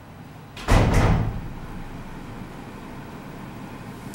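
A single loud thump with a short rushing noise about three-quarters of a second in, dying away within half a second, over steady room tone.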